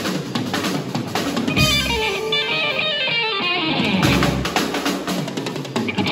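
Live rock band playing an instrumental passage: electric guitar picking quick runs of notes over electric bass and a drum kit, with no singing.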